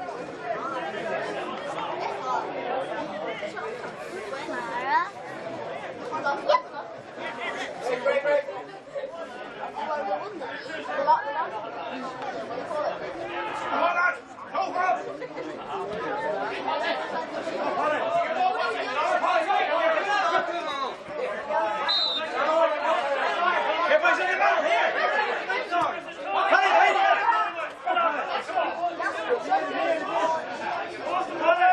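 Spectators' chatter: several voices talking over one another, none clearly, with louder stretches now and then.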